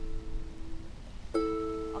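Ukulele's first and second strings plucked together with the index and middle fingers, the 拉 stroke of a slow strum-pluck pattern: one two-note pluck rings out and dies away in the first second, then a second pluck about a second and a half in rings on.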